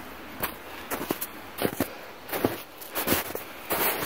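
Footsteps of a hiker walking along a dirt trail, a short crunch or scuff roughly every two-thirds of a second.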